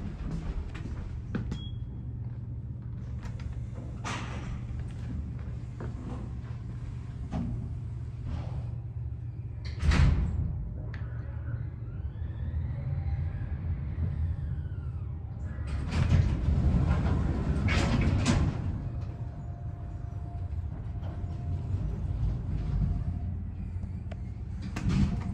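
Sliding lift doors and cab fittings clunking and rattling over a steady low hum from an EPL traction lift modernised by Kone. The loudest knock comes about ten seconds in, and a cluster of clatters follows some six seconds later. Between them comes a faint whine that rises and then falls.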